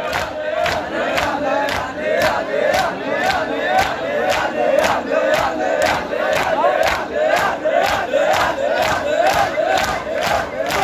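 Crowd of men performing matam, palms striking bare or clothed chests in unison in an even beat a little over twice a second, with massed male voices chanting a rising refrain between the strikes.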